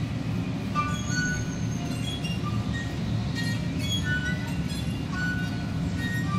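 Solo violin playing short, scattered high notes over a steady low rumble of noise from the piece's accompanying recorded audio.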